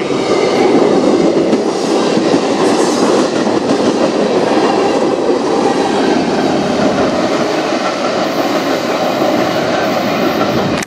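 Freight train cars, covered hoppers and tank cars of a CN manifest train, rolling past at close range: a steady, loud rolling noise of steel wheels on rail with clatter over the rail joints.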